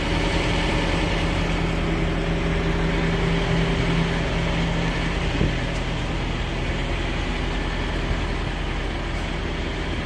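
Heavy diesel engine idling steadily, a low even drone.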